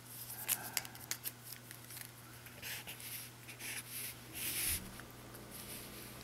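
Felt-tip marker pen scratching across paper in several short strokes as a box is drawn around a written equation, over a steady low electrical hum.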